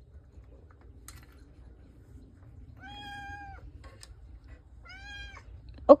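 Domestic cat meowing twice, about two seconds apart, the first call longer than the second: the cat asking to be let in at the door.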